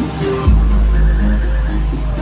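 Loud music from a truck-mounted loudspeaker stack, with heavy bass notes coming in about half a second in.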